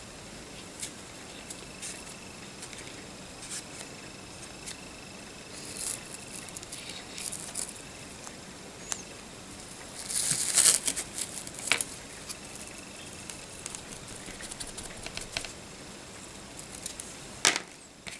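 Light scratches, taps and rubs of close-up painting work on a small plastic model part, with a louder stretch of scratchy scrubbing about ten seconds in and another sharp scratch near the end.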